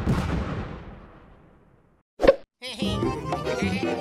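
Cartoon sound effects: a dense sound fading away over the first two seconds, then a single short, sharp hit a little over two seconds in, followed by cheerful music starting soon after.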